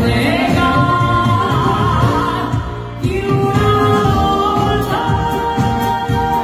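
A woman singing live into a microphone, backed by an Italian liscio dance band, the music amplified through the hall's sound system.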